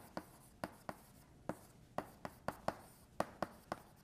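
Chalk writing on a blackboard: a quiet run of sharp, irregular taps and short scratches as letters are stroked on.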